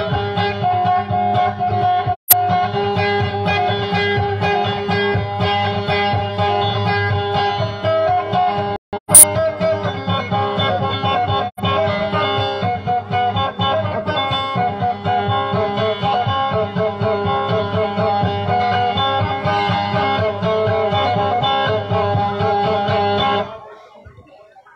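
Acoustic guitar playing a continuous picked melody over a steady low accompaniment, with two sharp loud cracks about two seconds and about nine seconds in. The playing stops just before the end.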